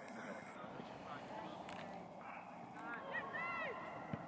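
Faint outdoor ambience with distant voices calling out; a high voice calls out briefly about three seconds in.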